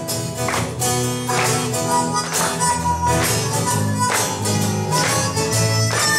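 Live acoustic blues-folk instrumental break: harmonica playing held notes over strummed acoustic guitar and a bass line, with a steady beat.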